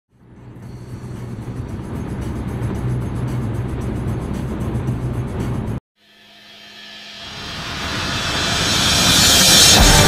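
Steady low drone of a vehicle on the road. It fades in and then cuts off abruptly about six seconds in. After a short gap, a rising swell of noise builds up over the last few seconds, leading into guitar music.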